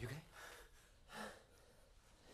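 Near silence, broken about a second in by one short, soft gasp from a man just woken from a nightmare.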